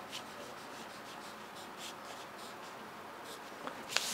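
A pen drawing a curved line on pattern paper: faint, light scratching in a series of short strokes.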